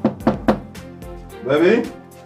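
Knocking on a front door: a quick run of sharp knocks about a quarter-second apart, the last about half a second in.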